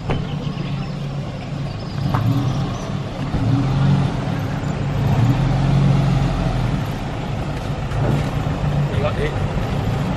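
A van's engine running close by, louder through the middle.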